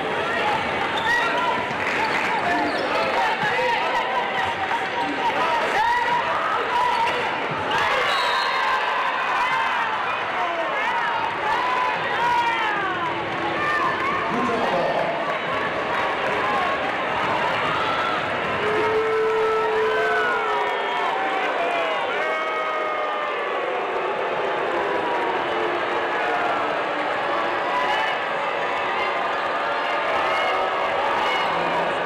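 Crowd chatter in a basketball arena, with sneakers squeaking on the hardwood court in many short high chirps and a basketball bouncing.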